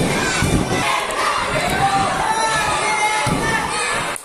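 Ringside crowd at a lucha libre match shouting and cheering, many high-pitched voices overlapping, with a low thud near the start and another about three seconds in.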